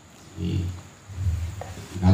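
A man's low voice through a microphone, two drawn-out sounds with short pauses between them, like hesitation sounds between phrases.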